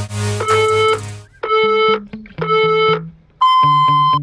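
Electronic background music with a steady bass line, over a countdown of electronic beeps about one a second. The last beep, near the end, is longer and higher: a workout interval timer marking the end of an exercise period.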